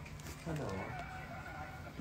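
A person's quiet, drawn-out vocal sound starting about half a second in, falling in pitch and then held for about a second, not words.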